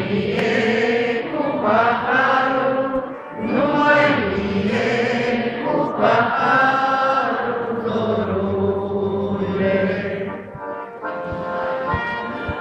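Concert audience singing a song together without accompaniment, many voices in unison with the singer, unamplified because the hall's power is out. The singing comes in phrases with brief breaks between them.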